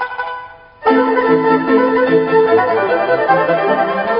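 Instrumental background music: one passage fades away, then a new passage of held, sustained notes cuts in abruptly about a second in.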